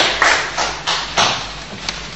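Audience applause, many hands clapping irregularly, dying away over the first second and a half.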